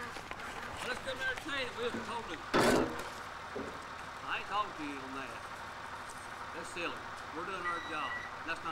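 Faint, distant voices talking over the steady running of an idling tractor engine, with one short loud bump about two and a half seconds in.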